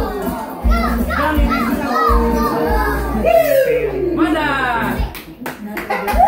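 Young children's excited voices, chattering and calling out over karaoke backing music, with one long falling vocal glide a little over three seconds in.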